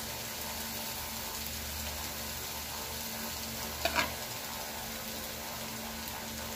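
Metal spoon knocking twice in quick succession against the aluminium pan or glass baking dish about four seconds in, while coconut-milk sauce is spooned over fried fish. Beneath it a steady hiss with a faint hum.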